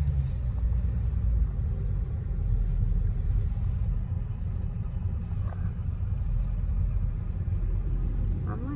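Steady low rumble of a car driving along a street, heard from inside the cabin: engine and road noise.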